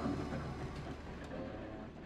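City bus engine idling with a low, steady rumble that fades slightly.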